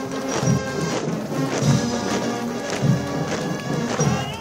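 Military band playing a march, with a regular beat of low thumps under the sustained brass tones.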